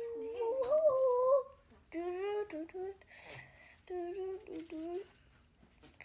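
A young child humming a wordless tune in a high voice: one long held note, then a few short notes with pauses between them.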